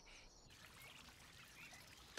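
Near silence: faint outdoor nature ambience with a couple of faint chirps.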